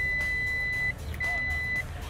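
Fluke clamp meter's continuity beeper sounding as the test leads make contact during a resistance test: a steady high-pitched beep that stops just under a second in, then a second, shorter beep a moment later.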